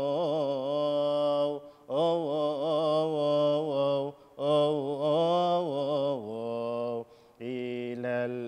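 A man's solo voice chanting a melismatic Coptic liturgical melody without words that can be made out: long held notes with wavering ornamented turns, in three phrases broken by short pauses for breath. The last phrase drops to a lower note about six seconds in.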